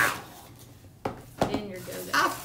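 Two quick, sharp knocks about a second in from a cardboard trading-card box being handled.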